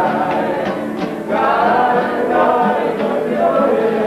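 A group of voices singing together in mariachi style, backed by acoustic guitar. The singing breaks briefly about a second in, then carries on.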